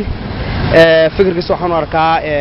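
A man speaking into a handheld microphone over a steady hum of street traffic.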